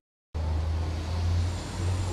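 Split-second dropout to silence at an edit, then a steady low rumble under a wash of background noise.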